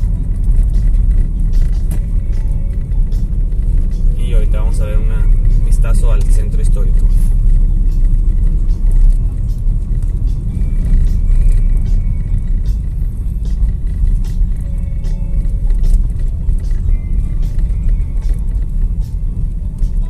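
Car driving slowly along a town street, heard from inside the cabin: a loud, steady low rumble of engine and road noise.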